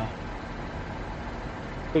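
Steady, low background rumble of vehicle noise.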